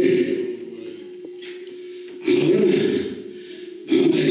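A man's voice preaching loudly into a microphone in short shouted bursts with pauses between, amplified through a sound system, over a steady low hum.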